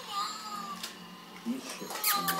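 Meowing calls that glide up and down in pitch, strongest in the first half-second. A short, louder sound follows about a second and a half in.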